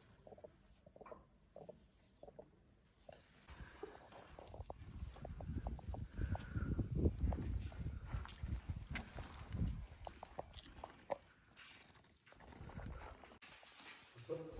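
African elephant calf suckling from a milk bottle: wet sucking and clicking sounds at the teat. It starts soft, then grows denser and louder with low rumbling noise from about four seconds in, before easing near the end.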